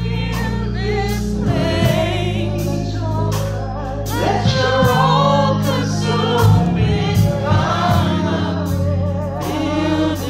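Live gospel singing by a small group of singers on microphones, voices wavering with vibrato over sustained low bass notes and a steady beat of about two strokes a second.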